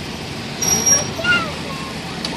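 Road traffic and engine noise heard from inside a vehicle's cabin in slow city traffic. About half a second in there is a short high steady tone, and a moment later some brief gliding tones.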